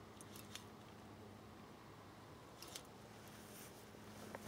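Near silence with a few faint, sharp clicks: a short cluster about half a second in and another near three seconds.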